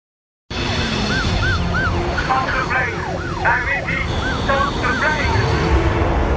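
Several police car sirens yelping, quick rising-and-falling wails that overlap at different pitches, over the low rumble of car engines. The sound cuts in about half a second in.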